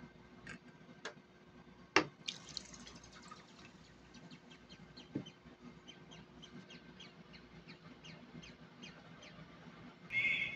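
Water being poured into an aluminium cooking pot of chicken curry: a sharp knock about two seconds in, then a run of small drips and splashes into the liquid.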